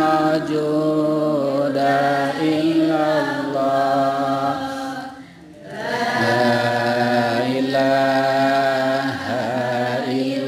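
A man's voice chanting a slow Islamic devotional chant through a microphone, drawing out long held notes with melodic turns, with a short pause for breath about five seconds in.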